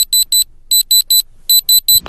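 Handheld electronic diamond tester beeping with its probe pressed to an earring stud: three groups of three quick, high-pitched beeps, the tester's signal of a diamond reading.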